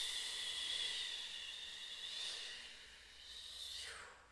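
One long forced exhale through pursed lips, a steady airy hiss with a faint whistle, tapering off over about four seconds as the lungs are emptied.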